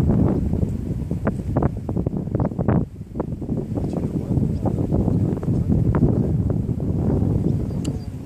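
Wind buffeting the microphone: an uneven low rumble with gusty crackles, easing briefly about three seconds in.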